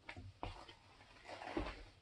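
Faint handling sounds of a brush being set down in a small saucepan of melted wax: two light knocks in the first half second, then soft scraping and a dull thump a little before the end.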